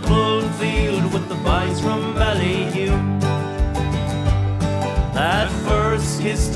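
A small acoustic band playing a slow folk-country song, with several acoustic guitars and a keyboard keeping a steady beat. A man's voice sings the melody over them, with gaps between the phrases.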